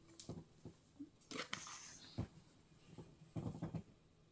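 Faint handling of a wool-and-silk poncho and its paper hang tags: a few soft rustles and taps, with a short flurry near the end.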